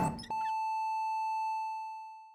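Hospital heart monitor flatlining: one long, steady electronic beep that starts about a third of a second in and fades away near the end, the sign that the patient's heart has stopped.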